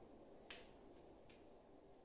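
Near silence with room tone, broken by one sharp click about half a second in and a fainter click a little later.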